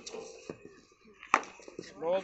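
A single sharp crack of a cricket ball meeting the bat, a little past halfway, during batting practice in the nets, with a couple of fainter knocks around it.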